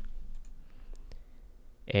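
A few faint computer mouse clicks, from the Send button being clicked in an API client.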